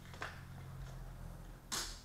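A room light switch clicking off once, sharply, near the end, over a low steady electrical hum.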